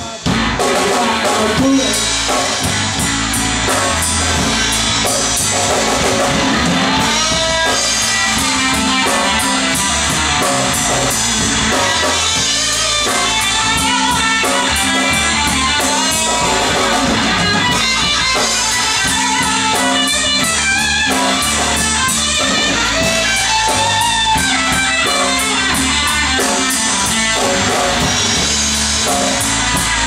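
Live blues-rock band playing an instrumental passage: a semi-hollow electric guitar, electric bass guitar and drum kit together, at a steady loud level.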